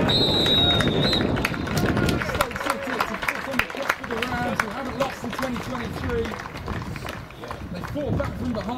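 A referee's whistle blows one long blast for full time, about a second long, over a loud rush of noise. Then come scattered claps and the voices of players on the pitch.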